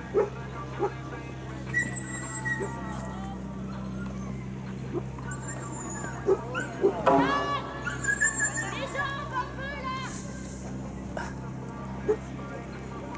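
Outdoor arena ambience: a steady low hum under distant voices, with a few dull thuds near the start and a burst of high, yelping, dog-like calls a little past the middle.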